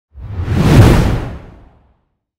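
A whoosh sound effect with a deep rumble under it, swelling quickly to a peak and then fading away over about a second.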